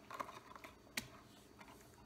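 Faint clicks and taps of an eyelash curler's plastic retail packaging being handled, with one sharper click about halfway through.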